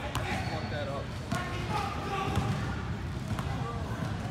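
Basketballs bouncing on an indoor gym court: a few separate sharp bounces amid background voices.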